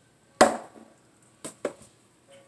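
A talwar striking a wrapped wooden pell three times: one loud hit about half a second in, then two quicker, lighter hits in close succession about a second and a half in.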